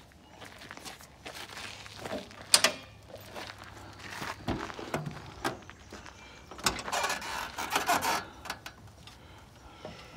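Metal clunks and rattles as the swing-away rear carrier and the rear door of a Toyota Troopcarrier are opened, with one sharp clank about two and a half seconds in the loudest. Knocking and rustling follow in the rear load area a few seconds later.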